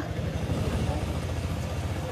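An engine running with a low, fast, even throb.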